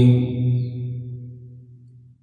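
A man's voice in Quranic recitation (tajwid) holding the last long note of a phrase at a steady low pitch, then fading away over about two seconds to near silence.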